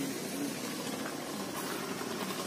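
Steady roadside traffic noise: an even hiss of passing vehicles with a faint low engine hum underneath.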